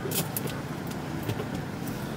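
Car engine idling, heard from inside the cabin as a steady low hum, with a few faint clicks.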